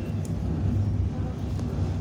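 Steady low rumble of a train running at speed, heard from inside an EKr1 Intercity+ electric train's passenger car, with a freight train's wagons rolling alongside on the next track.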